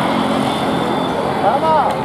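Steady city street traffic noise, with a voice rising briefly near the end.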